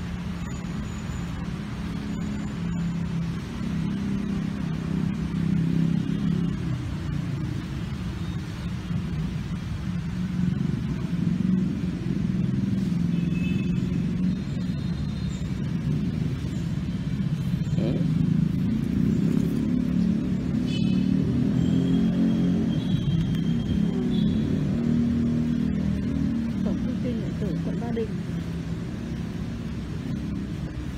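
Steady low rumble of road traffic, with indistinct voices and a few short high tones near the middle and the end.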